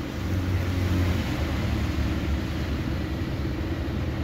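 Steady low rumble of a car heard from inside the cabin while it moves: engine and road noise.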